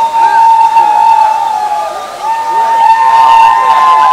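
Group of Naga warriors chanting their war-dance song in unison, holding a long drawn-out high note. The voices break briefly about two seconds in, then take up the held note again a little higher.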